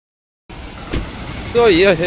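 Steady road traffic noise from a busy street of scooters, cars and auto-rickshaws, starting about half a second in, with a short knock near one second. A man's voice speaks a word near the end.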